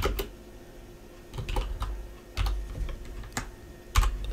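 Computer keyboard being typed: a handful of separate, irregularly spaced key clicks over a few seconds.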